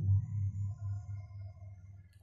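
A deep ringing tone from something struck just before, wavering in loudness about three times a second as it fades away over about two seconds.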